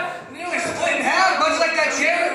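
A man's voice talking, with a brief pause about a quarter second in.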